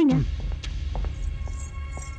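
A voice trails off at the start, then a low steady hum runs under faint sustained higher tones and a few soft ticks.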